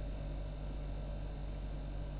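Steady low electrical hum with a faint hiss: the background noise of a home recording setup, with no distinct sound events.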